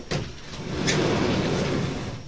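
A chalkboard panel bumps, then rolls along its track with a steady rumble for about a second and a half.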